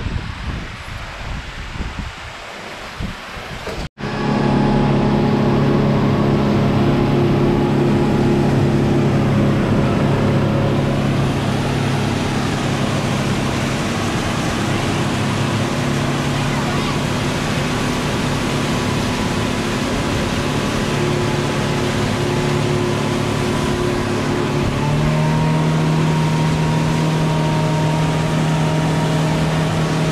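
Motor boat engine running steadily at speed, with water rushing and splashing along the hull. It starts abruptly about four seconds in, and its note shifts slightly near the end.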